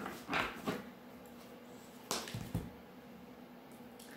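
Tarot cards being handled, with a card slid off the deck: a few short rustles and snaps in the first half, then quiet handling.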